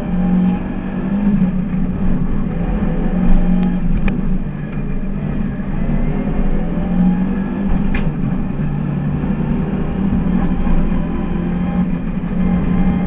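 A race car's engine, heard from inside the cockpit, runs hard at high revs with its pitch rising and falling a little through the bends. Two short sharp clicks come about four and eight seconds in.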